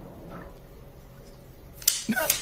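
Quiet low background hum with no distinct event, then a short sharp hiss near the end.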